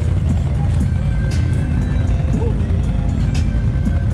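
Several Can-Am ATV engines idling together in a steady low rumble, with music playing over them.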